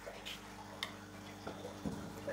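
Aquarium pump running with a steady low hum, with a few faint clicks over it.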